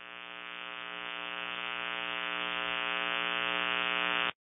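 A steady electronic buzzing drone at one pitch, growing steadily louder: the sound of an intro logo sting.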